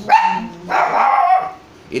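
A dog barking twice, the second bark longer.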